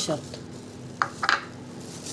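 Kitchen containers being handled on a counter: a short knock about a second in, then a brief rattling clatter.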